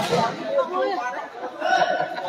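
Several voices talking over one another: chatter among the spectators.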